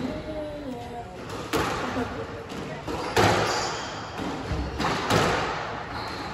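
Squash ball struck by rackets and hitting the court walls during a rally: three sharp cracks, one every one and a half to two seconds, each echoing around the court.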